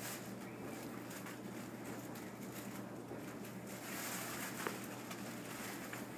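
Plastic bread bag rustling faintly and intermittently as bread is taken out of it, over a steady low hum, with a small click a little over halfway through.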